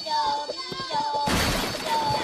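A cartoon Minion's high voice through a megaphone, giving a siren-like call that steps between two pitches. About a second and a half in comes a loud crash of things breaking.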